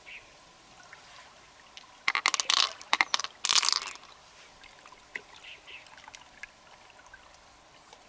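Wet squelching and dribbling as fingers work through the flesh of an opened freshwater mussel, in two short bursts of crackly wet noise about two and three and a half seconds in.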